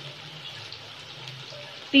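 Chicken feet frying in ghee in a large pot: a steady sizzle with small crackles, over a faint low hum.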